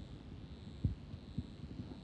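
Quiet auditorium room noise: a low rumble and a faint steady high whine, with two soft low thumps, one just under a second in and one about half a second later.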